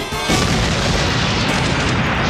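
Cartoon explosion sound effect: a loud blast about a third of a second in, running on as a long, dense rumble.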